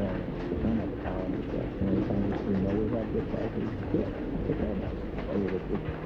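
Muffled, low-pitched sound of an old TV playing 1990s commercials, its voices dulled as if heard across a room, over steady rain tapping a window.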